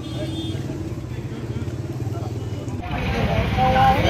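Street sound of a motorcycle engine running steadily under people's voices. It changes abruptly about three seconds in to a different outdoor scene of voices.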